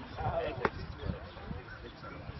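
A man's voice speaking, with one sharp crack about half a second in and low thumps through the rest.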